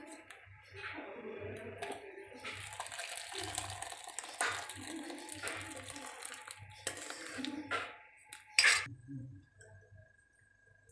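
Thick, creamy curry gravy sliding out of a tilted metal kadhai into a steel bowl, with a steel ladle scraping and knocking against the pan; the loudest knock comes about two seconds before the end, and then it goes quiet.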